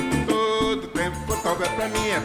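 Live forró band playing a short instrumental passage: accordion over drums, zabumba bass drum and guitars.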